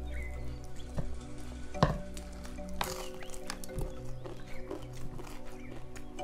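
Close-up mouth sounds of eating rice and chicken curry by hand: chewing and lip-smacking with many small wet clicks, one sharper click about two seconds in. Soft background music with held tones runs underneath.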